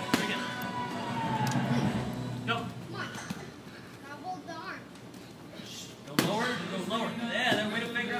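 Indistinct voices in a large gym, with a sharp thud about six seconds in and a smaller one near the end, as of a child's body landing on a padded training mat during grappling.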